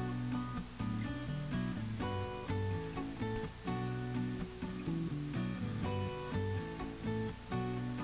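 Background music: acoustic guitar playing plucked and strummed notes in a steady rhythm.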